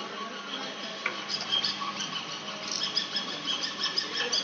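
Stick (shielded metal arc) welding: the electrode's arc crackles and sputters irregularly. It starts with a sharp click about a second in and grows denser after a few seconds, over a faint steady hum.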